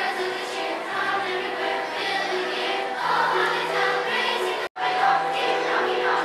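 Children's school choir singing. The sound cuts out for an instant about three-quarters of the way through, then the singing resumes.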